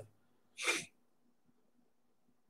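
A man's single short, sharp breath about half a second in, between phrases of speech; otherwise near silence with a faint steady hum.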